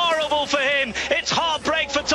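Excited male television commentary calling a bike race sprint, a man talking fast and without a break.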